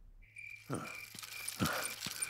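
Cartoon night-time ambience of crickets chirping steadily, about three chirps a second, with two short soft sounds in between.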